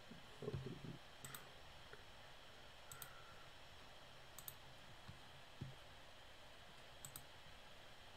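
Computer mouse clicking: four faint clicks spaced a second or two apart, over near silence. A short muffled vocal sound from a person comes near the start.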